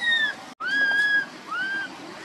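Infant macaque giving three high-pitched coo calls, a baby calling for its mother: the first falls in pitch, the next two rise and fall in an arch. There is a short break in the sound about half a second in.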